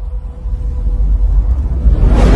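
A deep, low rumbling sound effect that grows steadily louder, building up under an animated logo reveal.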